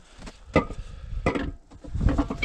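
Two footsteps crunching in packed snow, a little under a second apart.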